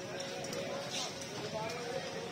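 Indistinct background voices with a few irregular light knocks, as a rolling pin works roti dough on a flour-dusted steel table.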